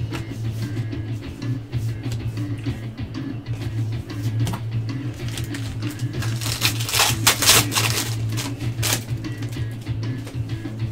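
Background music plays throughout, and a trading-card pack's plastic wrapper is crinkled and torn open in a run of sharp rustles from about six and a half to nine seconds in.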